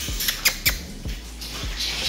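A few short, sharp clicks and taps, loudest about half a second in, over a quiet room.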